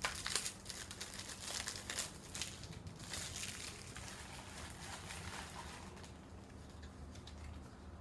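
A thin plastic packaging bag crinkling and rustling as it is opened and handled. It is busiest over the first few seconds and thins out later.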